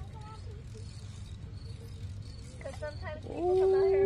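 A man's long, drawn-out shout held on one steady pitch for over a second, starting about three seconds in after a quiet stretch with faint murmuring.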